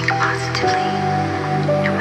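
Calm background music of slow held notes, with soft, wet squishing of thick paste being spread with a palette knife.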